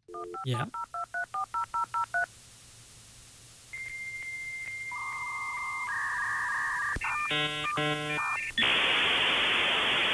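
Dial-up modem connecting. First a quick run of touch-tone dialing beeps, about six a second, then a steady high answer tone and two held handshake tones. Rapid warbling chirps follow, and near the end a loud hiss of scrambled data noise.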